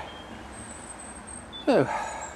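Quiet outdoor ambience: a low, steady background rumble with a faint thin high tone, then a man's voice says "So" near the end.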